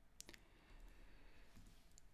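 Near silence between two stretches of speech, with a couple of faint clicks about a quarter of a second in.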